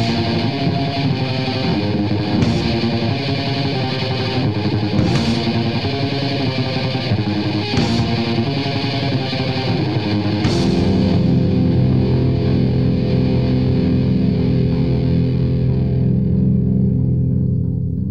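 Rock band recording with distorted electric guitar and bass, driving along with an accent about every two and a half seconds. About ten seconds in it changes to long held low chords, and the top end fades away near the end.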